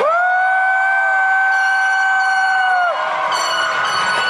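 A long, high 'woooo' cheer from someone in the audience, held on one pitch for about three seconds and dropping off at the end, cheering on a graduate.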